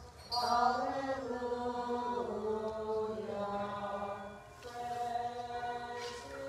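Byzantine-rite liturgical chant sung a cappella, in two sustained phrases with a short break between them about two-thirds of the way through.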